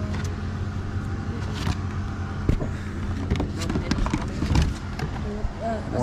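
Rustling and scattered light knocks of plush toys and other items being handled in a cardboard box, over a steady low hum.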